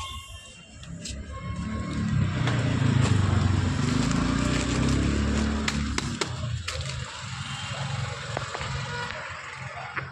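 A low rumble swells for a few seconds and then fades, with crinkling and sharp light clicks of plastic snack packets being handled and stacked.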